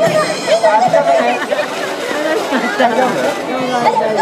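Crowd chatter: several people talking at once, with no clear single speaker and little or no music.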